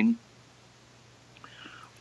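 A man's voice trails off at the start, then a pause with only faint background hiss. About one and a half seconds in comes a brief, faint breathy vocal sound, like a whisper or an intake of breath.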